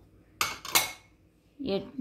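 Two clinks of ceramic on ceramic, a third of a second apart, the second louder with a brief ring: a small china bowl knocked against the rim of a china mixing bowl as cumin powder is tipped out of it.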